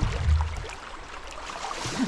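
Muddy creek water sloshing and lapping around men wading chest-deep and groping under the bank by hand, with a low rumble in the first half second.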